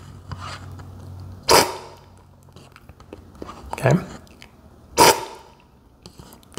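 Coffee slurped hard off a tasting spoon, twice: short, loud sprays of air and liquid about a second and a half in and again near the end, the forceful aspirating slurp used in coffee cupping.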